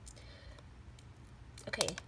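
Fingernails picking and scratching at something stuck on a rubbery color-changing Nee Doh stress ball, giving a few faint clicks.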